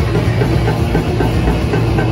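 Heavy metal band playing live at very loud volume: distorted electric guitars and bass guitar in a steady heavy riff, with the low end dominating.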